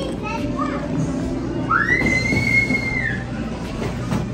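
Indoor play-area noise of children playing over a steady low hum, with short bits of children's voices early on and one long high-pitched child's call in the middle that rises and then holds for about a second and a half.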